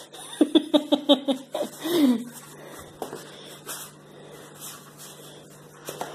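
A person laughing in a quick run of short "ha" pulses through the first two seconds, ending in a falling sigh, then it goes quieter.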